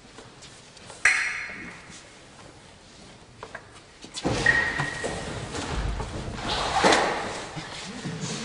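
A sharp ringing knock about a second in, then about four seconds of voices and movement noise echoing in a large hall.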